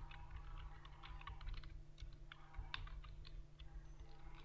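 Typing on a computer keyboard: a quick, irregular run of soft key clicks, with a faint steady hum beneath.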